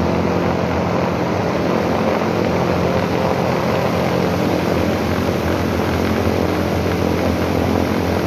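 Steady, loud rushing noise like fans running, with a low steady hum beneath it.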